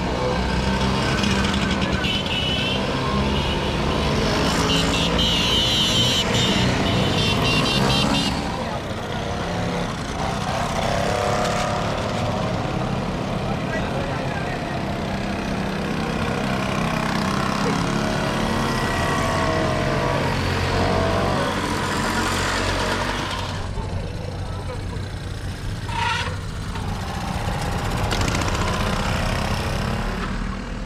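A procession of vintage two-stroke mopeds riding past one after another, their small engines buzzing, each rising and falling in pitch as it goes by.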